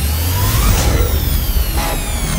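Dark electronic music sound effect: a deep, steady rumble under high tones that glide in pitch.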